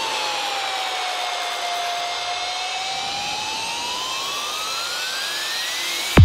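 Breakdown in a dark progressive psytrance track: the kick drum is out, leaving a hissing synth noise sweep with a synth tone that dips in pitch and then rises steadily through the second half, a build-up toward the drop.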